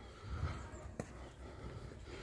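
Quiet outdoor lull with faint footfalls on a paved path and one sharp click about halfway through.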